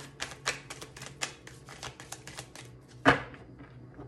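A tarot deck being shuffled by hand: a quick, irregular run of crisp card snaps and flicks, several a second, with one much louder knock about three seconds in.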